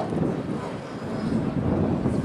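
Wind rumbling on the microphone over outdoor street background noise.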